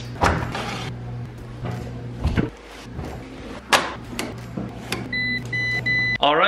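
A few knocks and clatters, then three short electronic beeps from a Speed Queen coin-operated washer's control panel as its buttons are pressed.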